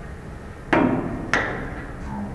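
Two sharp impact knocks a little over half a second apart, each with a short ring: a helmet-testing impactor striking a football helmet.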